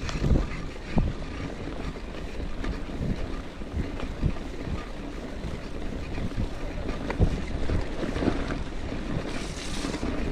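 Gravel bike riding over a bumpy dirt trail: steady rumble of the tyres on the ground, with wind buffeting the camera microphone and a few sharp knocks and rattles from the bike going over bumps.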